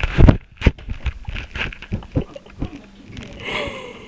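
A paper bag crinkling and scraping as a Shiba Inu puppy moves about with it stuck around his neck, in a series of short crackles and clicks. There is a loud knock about a quarter of a second in.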